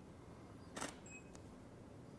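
A camera shutter firing once, faint, followed about a third of a second later by a short high beep from the flash recycling, then a fainter click.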